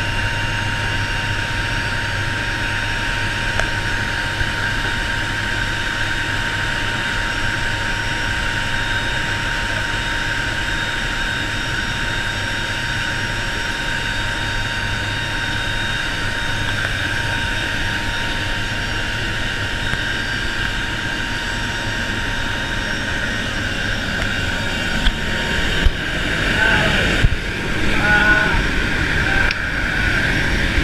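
Steady drone of a C-130J's four turboprop engines and propellers, heard from inside the cargo hold with the paratroop door open, so that the rush of air past the door mixes with a steady engine hum and whine. Near the end, irregular knocks and bumps from handling at the door join in.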